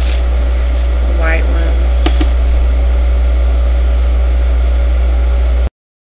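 Loud, steady low electrical hum on the recording, with a short murmur of a voice about a second in and a single click about two seconds in. The sound cuts off suddenly near the end.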